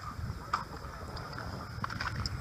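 Low rumbling background noise with a faint steady high-pitched tone and a couple of soft clicks, as from a handheld camera being carried.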